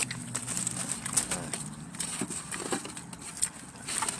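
A person chewing a mouthful of food, with scattered soft wet mouth clicks, over a low steady hum.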